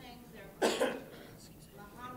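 A person coughing twice in quick succession, a little over half a second in.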